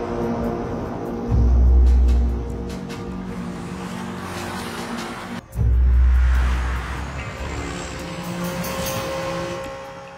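Tense orchestral score from a cartoon soundtrack with vehicle sound effects of cars and trucks driving along a highway. Two deep booms stand out, about a second in and just past the halfway point.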